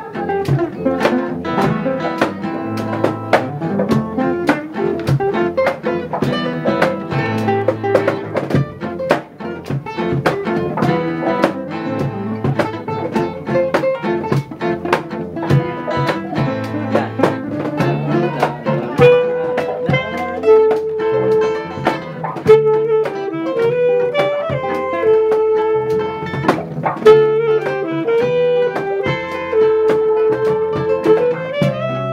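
Acoustic guitars, a nylon-string classical guitar among them, strumming and picking chords together, with a steady beat of strums over a low bass line. About two-thirds of the way in, a melody of long held notes comes in above the guitars.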